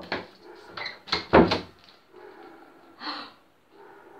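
A door being handled: a few short knocks and scrapes, the loudest about a second and a half in.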